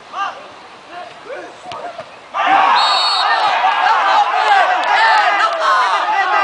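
A burst of many voices shouting and cheering at once, starting suddenly about two seconds in, as players and spectators react to a goal. A short, high referee's whistle blast sounds just after the shouting begins.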